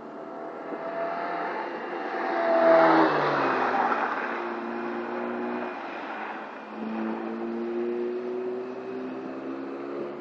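A 1-litre Vauxhall Nova's small petrol engine passes close by at speed on a circuit, loudest about three seconds in, its pitch dropping as it goes past. From about seven seconds the engine is heard again further round the track, its pitch rising as it accelerates.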